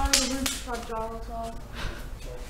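Mostly speech: a person's voice calling out with drawn-out syllables in a bare, empty building.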